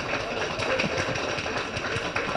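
Audience applause: many hands clapping in a steady patter.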